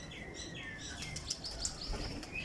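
Small birds chirping over and over in short, high calls, with a brief thump near the end.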